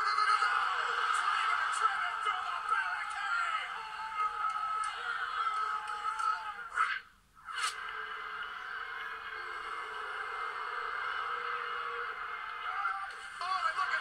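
Wrestling-broadcast audio heard through a TV speaker: music over arena crowd noise, thin and narrow in range, dropping out briefly about seven seconds in.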